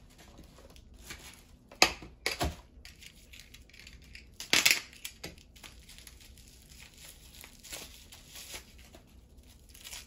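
Plastic wrapping being torn and crinkled off a candle. There are sharp rips about two seconds in, a louder one near the middle, and quieter rustling and crackling between them.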